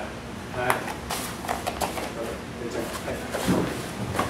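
Low voices talking among a few people, with several light sharp taps and knocks in the first two seconds.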